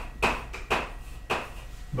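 Chalk writing on a blackboard: about four short, sharp taps and scratches as figures are written.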